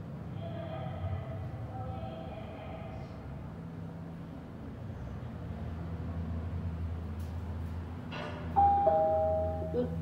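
Cableless telescopic-frame elevator car travelling with a steady low hum. About eight and a half seconds in, its arrival chime sounds two held tones, high then lower, marking the stop at the floor, and a recorded voice begins the floor announcement at the very end.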